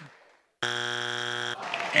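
Family Feud game-show buzzer giving one steady buzz about a second long, starting about half a second in. It marks a face-off answer that is not on the board.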